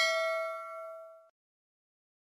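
Notification-bell 'ding' sound effect ringing out and fading, cut off about a second and a quarter in.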